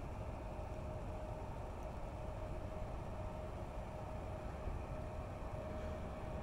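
Faint, steady low rumble of outdoor background noise with a thin, steady hum running through it; no distinct events.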